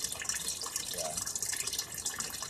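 Water from an aquarium filter's return hose splashing and trickling steadily into the water surface of the tank.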